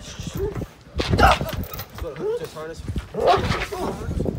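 German Shepherd police dog barking during bite-work agitation: two loud barks about two seconds apart, with voice-like vocal sounds in between.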